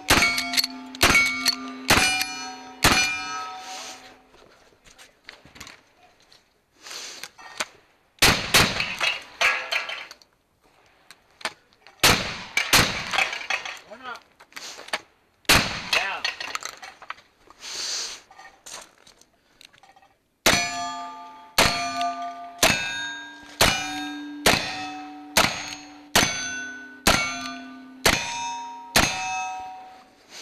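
Black-powder guns firing at steel targets. First comes a quick run of lever-action rifle shots, each answered by the ring of a struck steel plate. After a pause come several heavier blasts from a side-by-side shotgun with no ringing. From about 20 seconds in, a steady string of about ten revolver shots follows, each with a ringing steel target.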